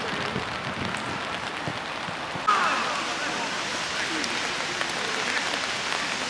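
Open-air ambience of a floodlit five-a-side football pitch picked up by a camera microphone: a steady hiss with faint distant shouts from players. About two and a half seconds in the background noise changes abruptly with a short jump in level, where one clip is cut to the next.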